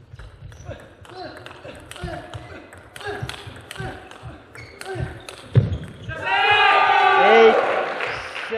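Table tennis rally: the plastic ball clicks off bats and table about twice a second, and shoes squeak on the court floor between strokes. About six seconds in, once the rally ends, a player gives a loud, drawn-out shout of celebration for winning the point.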